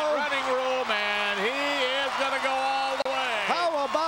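A male play-by-play announcer shouting excitedly over a long punt return, his words drawn out and held at a raised pitch.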